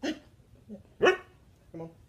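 A husky gives one short, sharp bark that rises in pitch about a second in, with a couple of smaller, quieter vocal sounds around it.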